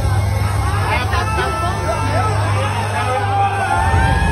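Crowd in a nightclub talking and calling out, many voices overlapping, over the low bass of the club's sound system, which drops away near the end.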